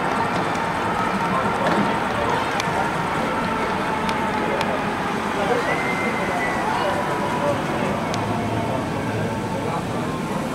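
Steady din of voices and ride noise around a roller coaster, with no single voice standing out and a brief high cry about halfway through.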